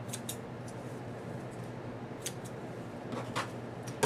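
Scissors snipping through the thread chain that links pairs of sewn fabric squares, cutting them apart: several short, quiet snips at uneven intervals.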